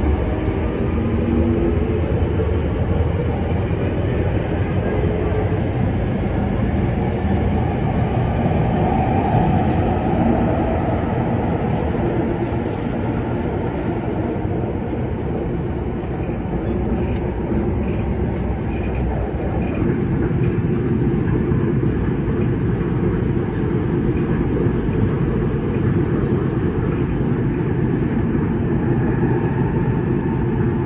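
Kinki Sharyo–Kawasaki electric train running at speed, heard from inside the car as a steady rumble of wheels and running gear. A few tones glide in pitch in the first few seconds.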